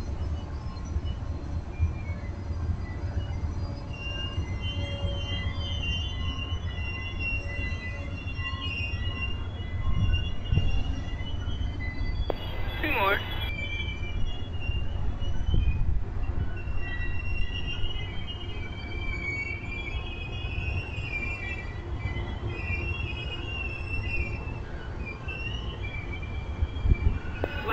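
Passenger railcars rolling slowly past, their wheels rumbling steadily on the rails, with a wavering high-pitched wheel squeal setting in a few seconds in and coming and going as the cars take the curve.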